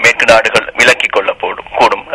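Speech only: a man talking in Tamil.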